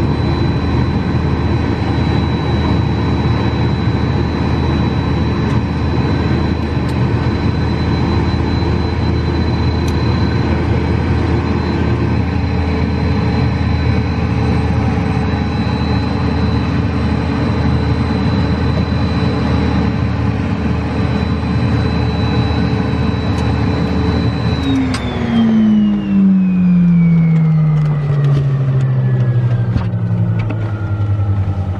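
Twin Pratt & Whitney Canada JT15D turbofans of a Hawker Beechcraft 400XP running at idle, heard from inside the cabin as a steady whine with a high tone. About 25 seconds in the engines are shut down and the whine falls steadily in pitch as they spool down.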